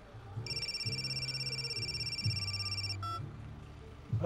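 Phone ringing with a fast, steady electronic trill for about two and a half seconds, cut off by a short click near the three-second mark.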